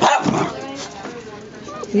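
A puppy gives a short, loud bark right at the start while several puppies play together, with quieter scuffling after it.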